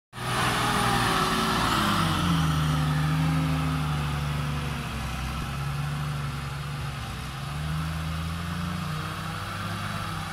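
Loaded dump truck's diesel engine pulling it over rough dirt ground, its note dipping and rising with the throttle. Loudest early as it passes close, then growing quieter as it drives away.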